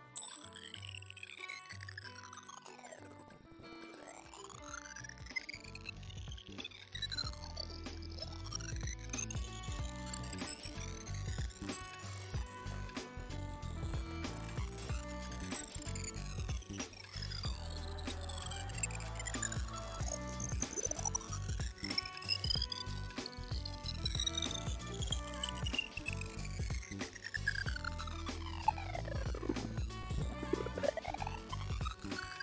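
A single pure test tone that starts abruptly and sweeps slowly and steadily upward in pitch, from about 8,000 Hz to about 15,000 Hz: a high-frequency hearing-test sweep, where the point at which the tone fades from hearing marks the limit of the listener's high-frequency hearing.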